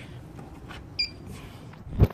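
Handheld refrigerant gas leak detector giving a single short, high beep about a second in, part of a slow regular beeping about once every 1.2 seconds, with low handling noise and a sharp knock at the very end.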